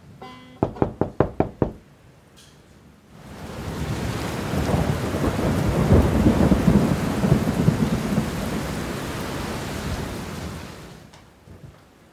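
A quick run of banjo strums about a second in, then heavy rain with a deep rolling rumble of thunder that swells up, peaks midway and fades away before the end.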